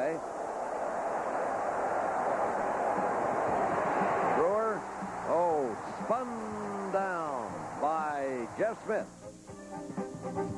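Stadium crowd roar during a punt, a steady din that breaks off suddenly about four and a half seconds in. After that, pitched voices rise and fall over music.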